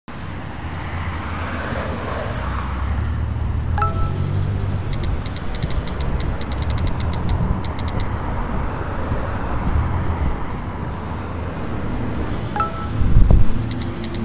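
Steady low traffic rumble of a street at night. A short phone text-message alert chime sounds about four seconds in and again near the end. A heavy low thump comes just before the end.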